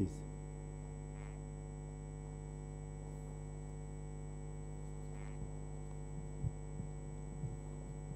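Steady electrical mains hum, with a few faint soft knocks and paper rustles in the second half.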